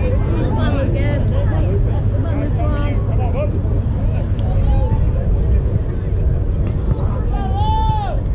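Spectators' voices talking and calling out at a youth baseball game over a steady low rumble. Near the end comes one long, drawn-out shout.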